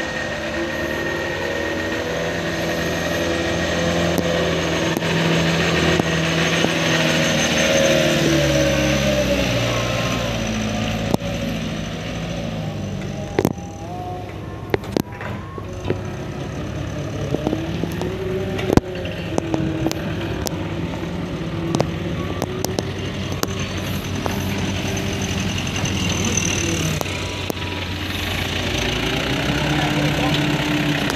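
Mitsubishi Colt Diesel dump truck's diesel engine running as the truck drives along a dirt track, its note stepping up and down in pitch. A few sharp knocks come near the middle.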